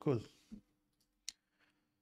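A short spoken word, then a faint low knock about half a second in and a single sharp click just over a second in, made while working the computer's mouse or keys in a code editor.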